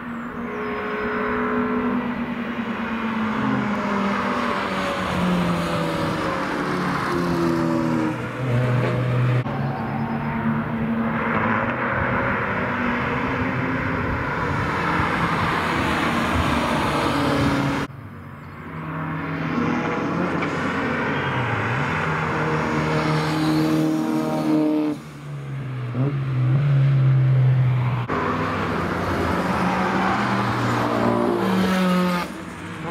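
Track cars going by one after another, among them a Renault Twingo and a BMW 3 Series Compact, engines rising and falling in pitch as they brake, change gear and accelerate through the corners. The sound changes abruptly four times as one car's pass gives way to the next.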